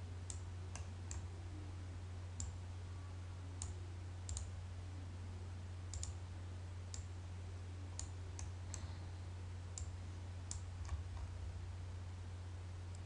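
Computer mouse clicking: about fifteen single clicks at irregular intervals, over a steady low hum.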